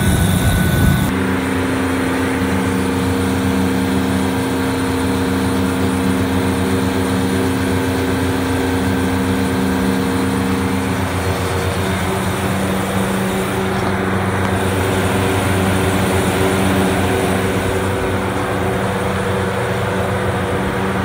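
Refrigeration condensing unit running: its condenser fan motors turning with a steady hum and a rush of air. Part way through, about eleven seconds in, the mix of hum tones shifts.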